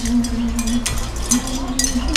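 A hanging wind-chime mobile ringing in strong wind: one low bell tone holds, then is struck again a little past halfway. Wind rumbles on the microphone, and a few light clinks of a spoon and fork on a plate come through.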